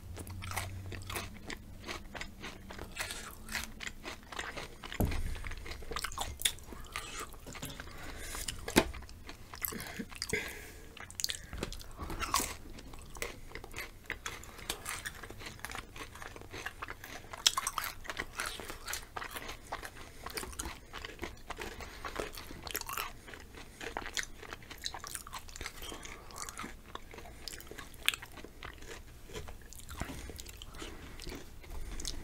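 Close-miked chewing and crunching of chocolate-covered potato chips, with irregular sharp crunches throughout.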